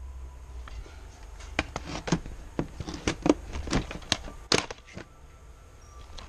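Plastic video game cases clacking as they are pulled from a shelf and handled: a string of sharp taps and clicks, the loudest about four and a half seconds in.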